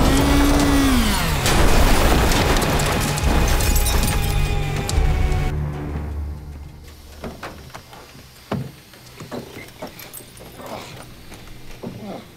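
Car-crash sound design mixed with a dramatic film score: a vehicle's pitch rises and falls away as it leaves the ground, then a loud run of crashing, scraping and shattering that cuts off suddenly after about five seconds. After that come quieter scattered knocks and creaks from the overturned car, with a louder clunk near the end as its door is pushed open.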